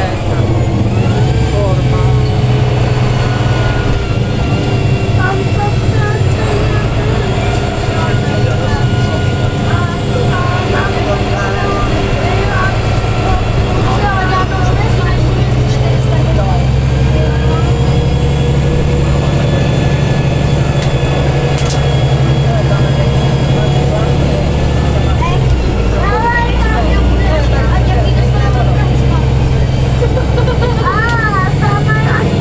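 Karosa B961 articulated city bus driving, heard from inside the passenger cabin: a steady low engine drone with a change in engine note about twenty-five seconds in.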